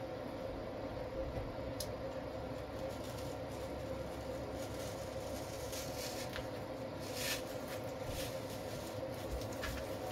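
Steady background hum in a small room, with a few faint clicks and rustles as artificial flower stems are handled and pushed into floral foam in a wicker basket.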